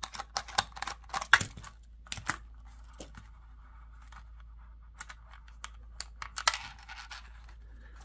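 Small clicks and ticks of a screwdriver backing out the screw that holds a Kydex holster's belt clip, then hard plastic clicks as the holster and clip are handled. The clicks come thick for the first couple of seconds, fall quieter, and pick up again in a short cluster near the end.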